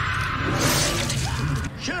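A wood chipper running: a steady engine drone under loud, harsh shredding and grinding noise.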